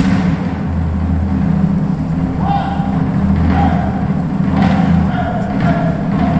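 Small drum corps brass ensemble with drums starting to play on the conductor's cue, opening with sustained low brass notes; higher horn notes come in about halfway through.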